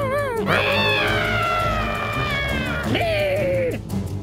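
Cartoon character voices giving strained, wavering cries of effort over background music: a short wobbling cry, then a long cry slowly falling in pitch, then a shorter falling cry near the end.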